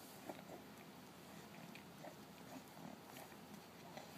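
Faint mouth sounds of a toddler chewing puff snacks, with a few brief, soft noises from his throat.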